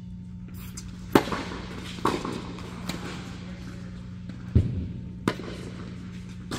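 Tennis ball being struck by rackets and bouncing on an indoor hard court during a rally: about five sharp pops a second or so apart, the loudest about a second in, each echoing in the big hall. A steady low hum runs underneath.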